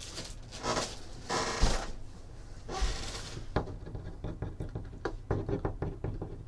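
Handling noises from items being moved around a desk: a few short rustling swishes, then a run of light knocks and taps.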